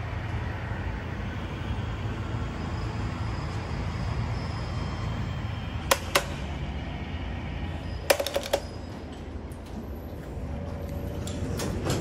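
Steady low rumble of the parking-garage landing, with a sharp click about halfway through as the elevator hall call button is pressed and a quick cluster of clicks about two seconds later. The elevator car doors slide open near the end.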